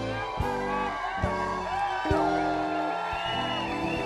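Live soul band playing a slow song, with held chords over a drum hit about every second, and crowd voices cheering over the music.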